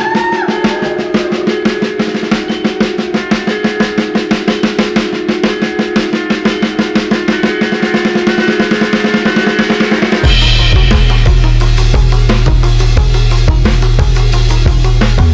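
Electronic dance music: a snare-drum build-up whose hits come faster and faster over held synth notes, then a drop into heavy bass and a steady beat about ten seconds in.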